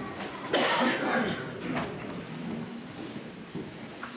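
Audience applause fading away, followed by coughs and low murmuring.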